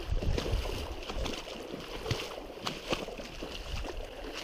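Feet wading through a shallow creek: water sloshing and splashing with each step, with irregular small ticks over a steady wash of water.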